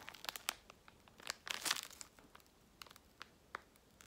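Product packaging crinkling and rustling as it is handled, in scattered short crackles with a denser patch just before the middle.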